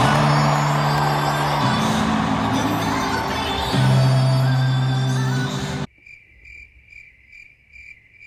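Loud live music filling a stadium, with long held deep bass notes, cutting off suddenly about six seconds in. After the cut, a faint high chirp repeats about twice a second.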